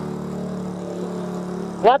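A motor vehicle engine running steadily nearby, giving an even hum. Near the end a man says a sharp, rising 'What?'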